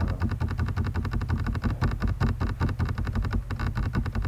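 A fast, uneven run of clicks, roughly ten a second, over a steady low hum: computer clicking while a document is scrolled.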